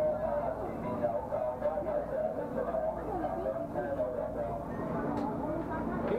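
Overlapping chatter of passengers inside a subway train carriage, over the steady low hum and rumble of the train.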